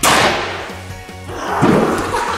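A sudden burst of water spraying and splashing in a pool, fading over about a second, then more splashing near the end, over background music.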